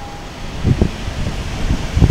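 Wind rumbling in gusts on the microphone over street traffic noise, with a stronger gust just under a second in.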